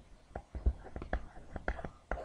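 A man muttering quietly under his breath, mixed with a series of short, irregular soft taps and clicks.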